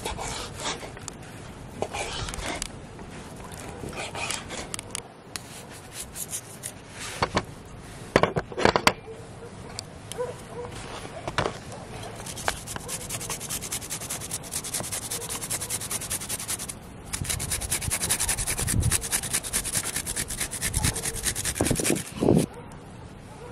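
A knife slicing raw meat on a wooden cutting board, scattered cuts and knocks with a few sharper knocks about eight seconds in. From about halfway, a garlic clove is rasped quickly across a handheld grater in dense rapid strokes, in two runs with a short break.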